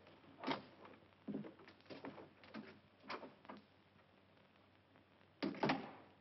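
A wooden room door being opened, then a few light knocks and steps. Near the end comes a louder knock, as of the door being shut.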